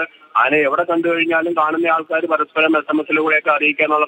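A man speaking Malayalam steadily over a telephone line, his voice thin and narrow.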